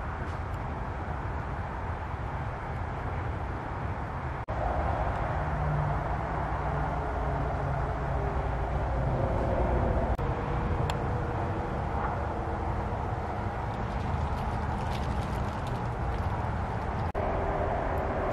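Steady low background rumble and hiss, with a faint hum that comes and goes through the middle.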